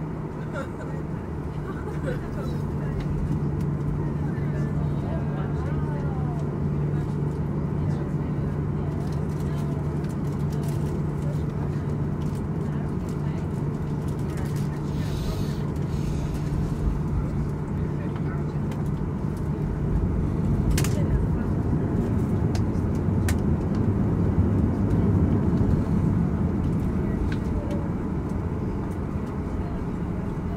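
Cabin noise of a Boeing 737 taxiing, heard from inside: a steady low engine hum at idle over rumble from the wheels, which swells louder for several seconds about two-thirds through. Indistinct passenger voices sit underneath, and there is one sharp click.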